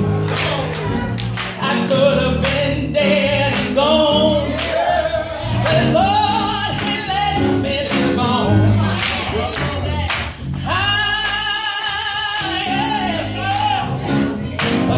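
Gospel choir and lead singer singing an up-tempo gospel song, with one long held note about eleven seconds in.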